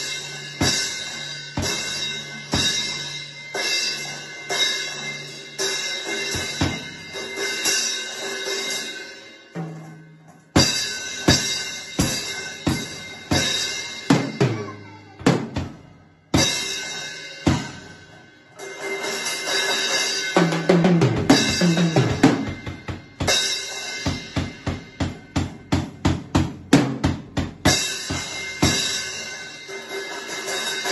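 Child's small drum kit played with sticks: a steady beat on bass drum, snare and cymbals, broken by short pauses about ten and sixteen seconds in, with a run of evenly spaced single hits, about three a second, near the end.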